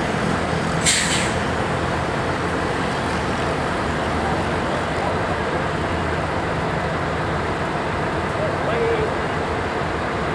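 Scania L113CRL bus diesel engine idling steadily, with a short sharp hiss of compressed air from the air brake system about a second in.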